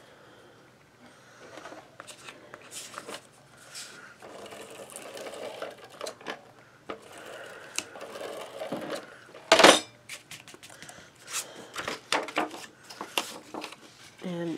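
Cardstock rustling and sliding on a tabletop, then a Scotch Advanced Tape Glider laying adhesive along a paper edge: one short loud burst about two-thirds of the way in, followed by several sharp clicks.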